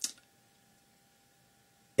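Near silence: small-room tone with a faint steady high hum, after a brief soft noise at the very start.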